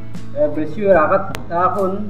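A voice repeating the same short phrase over and over, over background music with guitar.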